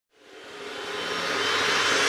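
A whooshing riser sound effect that swells steadily louder out of silence.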